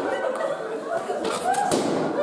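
A balloon bursting with one sharp bang about three-quarters of the way in, squeezed until it pops, over the chatter and laughter of a crowd in a large hall.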